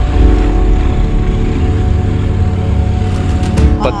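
A motorcycle running on the move: a steady low rumble of engine and wind, with background music over it.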